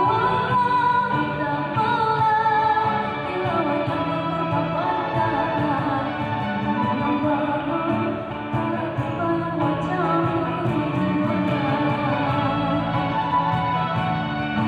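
A live band with keyboard and guitars plays through the hall's speakers with a steady beat, a singer's voice carrying the melody, clearest in the first few seconds.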